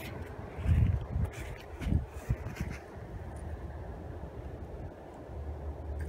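Wind buffeting the microphone in uneven low gusts, with scattered clicks and light rattles of dried acorns being scooped by hand from a wire crate.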